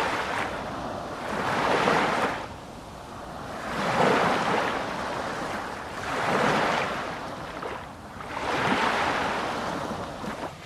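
Waves washing in and out, each a rushing surge that swells and fades, about one every two seconds.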